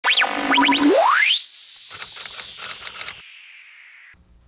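Electronic logo sting: quick falling and rising glides, then a long rising sweep into a held high tone, followed by a quick run of sharp typewriter-like clicks, fading away near the end.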